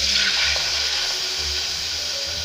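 Orange juice poured into a hot steel saucepan: a steady hiss of liquid splashing and sizzling in the pan, easing off slowly.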